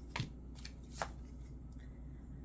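Tarot cards being handled as the next card is drawn from the deck: three short, sharp card snaps in the first second, then only faint handling.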